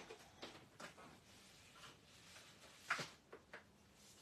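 Faint handling noises, quiet rustles of paper or card, with one light knock about three seconds in, in an otherwise near-silent small room.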